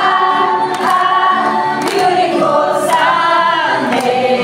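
A small group of mixed voices singing a song together, holding and sliding between notes, accompanied by acoustic guitars.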